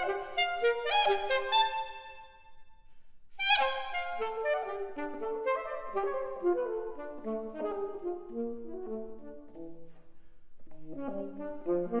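Solo saxophone playing fast runs of notes. About three seconds in the playing stops briefly and the last notes ring out in the hall, then a loud accented note starts another quick running passage.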